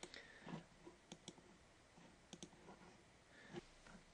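Near silence broken by several faint, isolated computer mouse clicks.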